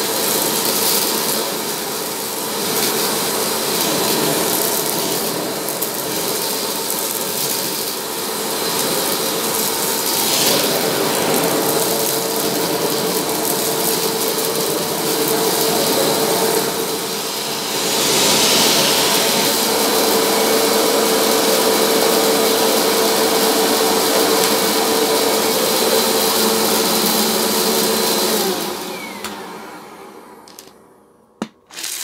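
Vacuum cleaner running steadily as its hose wand sucks aquarium gravel out of a shag rug. Near the end the motor winds down and stops.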